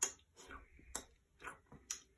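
Mouth smacks and lip clicks from miming licking an ice cream cone: a string of short, irregular clicks, about half a dozen.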